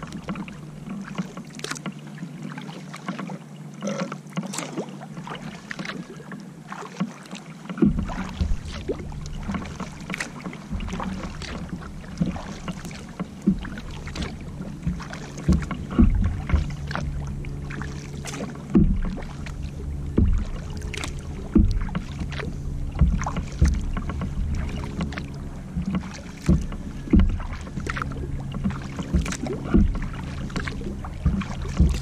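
Kayak paddling: the blades of a double-bladed paddle dip and splash in a steady rhythm, about one stroke every second and a half, with water dripping between strokes. A low rumble of water and wind joins about eight seconds in.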